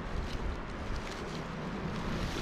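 Wind buffeting the microphone, a steady low rumble, with a few faint rustles.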